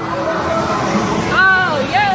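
Arcade din: a steady mix of machine noise and crowd chatter, with one short high-pitched call, rising then falling, about one and a half seconds in.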